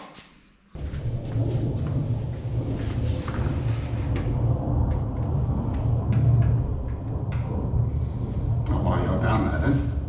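A loud low rumble starts abruptly just under a second in and continues steadily, with scattered light clicks and taps over it.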